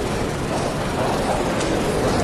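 Steady room noise in a large meeting chamber: an even, unbroken rumble and hiss with no clear sound standing out.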